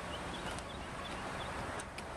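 Steady outdoor background noise with a low fluttering rumble, and faint short high chirps every quarter to half second.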